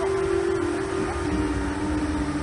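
Steady rush of a waterfall, with a single held tone laid over it that steps down in pitch about a second in.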